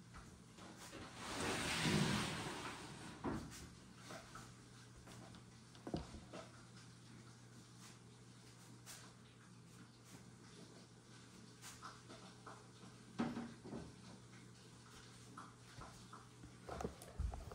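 Handling noise as an acrylic snake enclosure is put back into a plastic rack tub: a long sliding scrape about a second in, then scattered light knocks and clicks.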